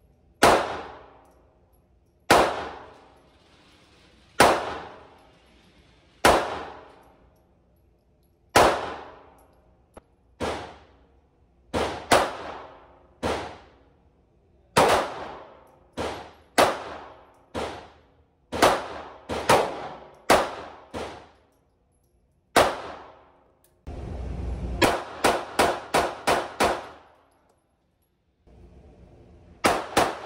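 Shots from a Beretta Pico .380 ACP pistol in an indoor range, each a sharp crack with a long ringing echo. At first single shots about two seconds apart, then quicker pairs and strings, and a fast run of about seven shots near the end.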